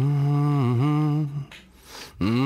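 A low voice humming a sustained, wavering phrase on a cartoon soundtrack, ending about one and a half seconds in.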